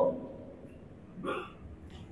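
A pause in a man's speech into a microphone: quiet room tone, with one brief throat or mouth sound from the speaker a little over a second in.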